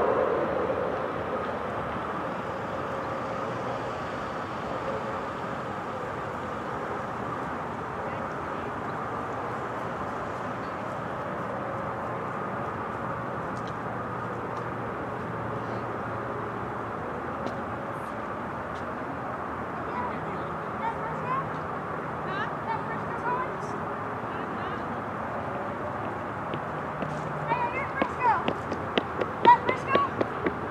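The siren's voice message echoes away in the first second, leaving steady outdoor background noise like distant traffic. Short high chirps and clicks come and go in the last ten seconds.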